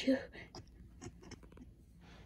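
The word "you" spoken, then faint scratchy rustling and small clicks of fleece plush fur rubbing against the recording microphone held right up to it.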